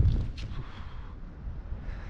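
Wind buffeting the microphone as a BASE jumper's parachute canopy finishes opening. The rush is loud at first and dies away within the first half second as the fall slows, leaving a quieter, steady rush of air under the open canopy. A brief high hiss comes about half a second in.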